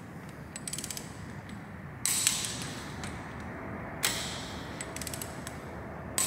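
Ratchet of a torque wrench clicking as cylinder-head bolts are tightened to the first stage of 40 Nm. There is a quick run of clicks, then two longer ratcheting strokes starting about two and four seconds in.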